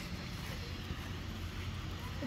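Steady low mechanical hum under a faint even background hiss.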